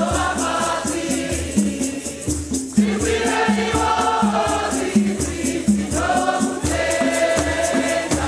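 Choir singing a Shona Catholic hymn in several voices, in phrases with short breaks between them, over hand-held gourd shakers (hosho) shaken in a steady rhythm and a repeating low beat.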